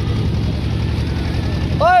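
Boat engine running with a steady low rumble. Near the end a man shouts "Oi!"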